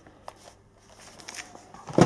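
Faint rustling and crackling of a plastic postal bag and paper-wrapped package being handled, ending in one sharp knock as the package is set down.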